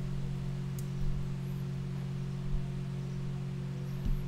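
Steady low electrical hum of several tones with a fainter higher tone above it, and a faint click about a second in.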